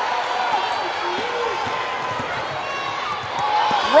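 Steady crowd hubbub in a basketball arena, with a few faint voices calling out and the soft knocks of a basketball being dribbled on the hardwood court.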